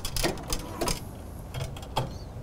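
A handful of light clicks and knocks from a metal embroidery cap driver being turned and slid onto the cylinder arm of a multi-needle embroidery machine.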